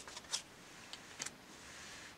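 A few faint clicks and rustles of tarot cards being handled as one card is moved off the top of the deck, the clearest about a third of a second in and again about a second later.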